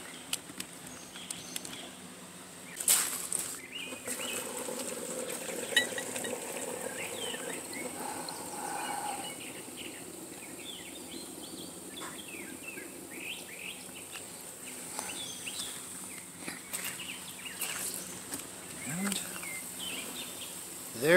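Vacuum filtration rig running: a low steady hum under scattered short chirps and gurgles. A couple of sharp knocks come about three and six seconds in.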